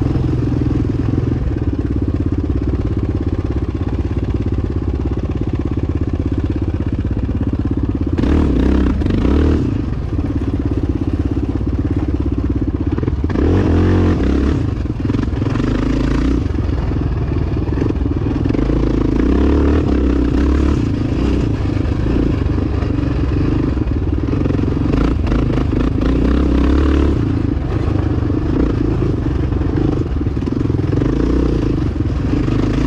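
Yamaha dirt bike's engine running under way on a dirt track, heard from the bike itself, its note rising and falling as the throttle is opened and closed, with harder revs about a third of the way in and around halfway.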